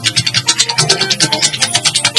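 Fuji music: a fast, dense percussion pattern with no singing.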